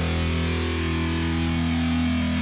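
Heavy metal music: a distorted electric guitar chord with bass held steady and ringing out, the closing chord of a song.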